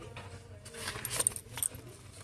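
Handling noise as a cardboard gift box holding three tins is lifted and tipped: scattered light clicks and rustles, with the jingle of a chunky metal chain bracelet.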